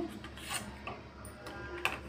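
A steel ladle lightly clicking against a stainless steel pot of boiled mushrooms as they are scooped out, two faint ticks in a quiet stretch.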